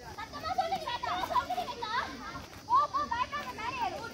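Girls' high voices calling out and shouting during a kabaddi raid, several voices at once.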